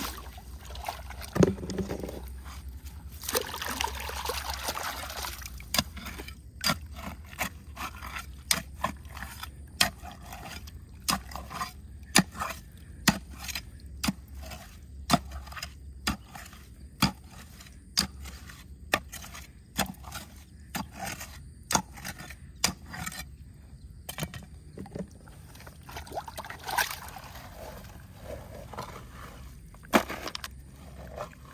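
A hand digging tool chopping and scraping into pebbly soil, a steady run of sharp knocks about one to two a second as it strikes stones, with longer scraping, rustling stretches a few seconds in and near the end.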